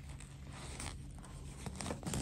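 Fabric being handled close to the microphone: short scratchy rustles as small pieces of doll-dress cloth are pinched, folded and rubbed between fingers, with a couple of sharper scrapes near the end.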